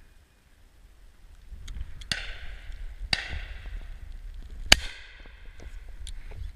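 Three shotgun shots, about a second apart and then a second and a half apart, each with a ringing tail; the last is the loudest and sharpest. Wind rumbles on the microphone throughout.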